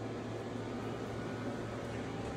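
Steady fan hum with an even hiss and a constant low drone, no change throughout.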